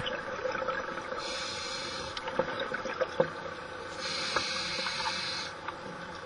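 Scuba diver's regulator breathing underwater: a long hiss of breath that grows stronger for about a second and a half near the end, over a steady underwater noise with a few faint clicks.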